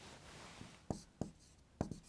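Marker pen writing on a whiteboard: a faint drawn-out rubbing stroke in the first second, then three short sharp taps as the tip makes quick strokes.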